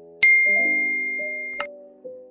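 A click sound effect followed at once by a bright single bell ding, the notification-bell sound of a subscribe-button animation, ringing and fading for over a second; a second click comes near the end. Soft piano music plays underneath.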